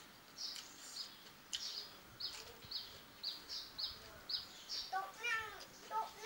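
A small bird chirping over and over, short high falling chirps about two a second. Near the end a cat meows.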